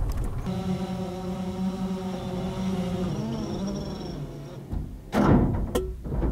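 DJI Phantom quadcopter's rotors humming at a steady held pitch for about four seconds. A loud thud and clatter follow about five seconds in as the drone crash-lands.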